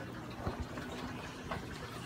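Aquarium filtration running: a steady low hum with faint water trickling and bubbling, and a couple of faint clicks.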